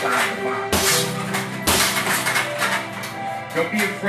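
Background music with sustained tones, and sharp slaps of punches landing on a heavy punching bag, about a second apart.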